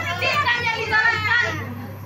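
A woman speaking into a handheld microphone, with a short break in her speech near the end.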